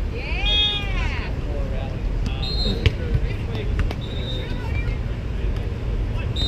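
Outdoor ambience beside a sand volleyball court: a steady low rumble, scattered voices, and a loud high call that rises and falls in pitch in the first second. A single sharp knock comes just before the three-second mark.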